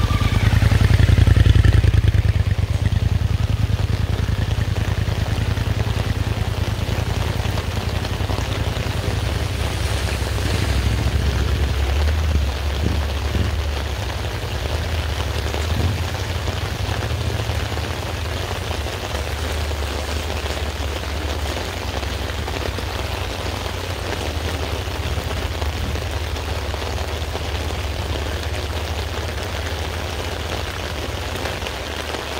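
Steady rain falling on wet ground, over a continuous low rumble. A motorcycle engine running close by makes the rumble loudest in the first few seconds.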